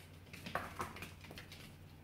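A Manchester terrier puppy's claws tapping on a laminate floor as it runs in, a few light taps about half a second to a second in, over a steady low hum.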